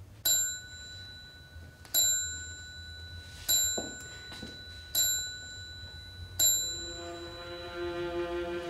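A small high-pitched bell struck five times, about one and a half seconds apart, each strike ringing on. Near the end, bowed strings come in with sustained low notes.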